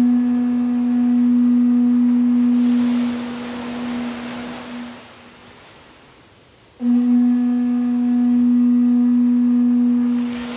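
Two long, steady blasts on a Hawaiian conch shell (pū), one at the start fading out after a few seconds and a second about seven seconds in, over the wash of ocean waves.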